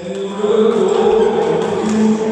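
A loud, long held vocal sound, like a chant or a sung note from several voices, carrying steadily over the hall.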